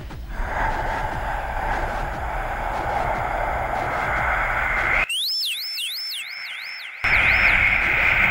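Experimental electronic noise music: a dense band of hiss and rumble that cuts out abruptly about five seconds in, leaving a high electronic tone sweeping up and down about four times a second for two seconds, before the noise comes back louder.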